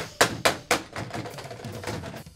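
A quick run of sharp knocking hits, four strong ones in the first second and lighter ones after, with music.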